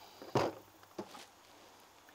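Two short clicks of small plastic latch hardware being handled and hung on the crate lid: a louder clack about half a second in and a softer click about a second in.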